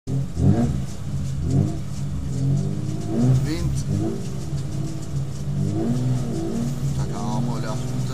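Rally car engine idling in the cabin while waiting at the start line, with repeated short throttle blips that rise and fall in pitch, several in quick succession near the end.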